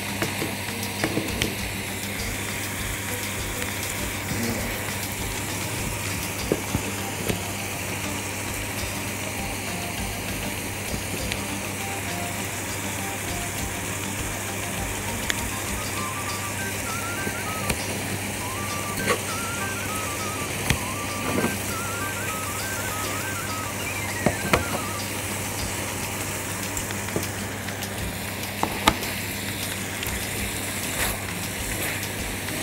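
Chicken pieces and chopped onion sizzling steadily in a frying pan, with occasional short clicks from kitchen scissors snipping the chicken and the spatula against the pan. A steady low hum runs underneath.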